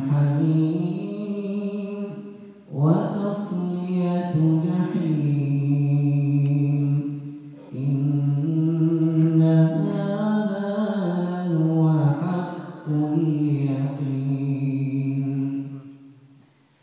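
A man reciting the Quran in a slow, melodic chant, holding long wavering notes in long phrases, with brief pauses for breath between them.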